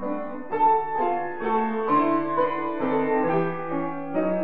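Grand piano played four hands: sustained chords under a melody line, the notes changing about every half second.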